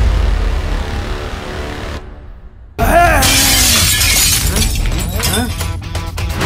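A deep boom with a low rumble, then about three seconds in a sudden loud crash of shattering glass as a vehicle windscreen smashes, with a voice crying out, all over dramatic music.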